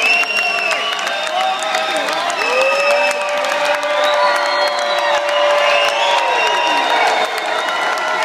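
A concert audience clapping and cheering, with whoops and shouts over the applause. One long held cheer runs through the middle.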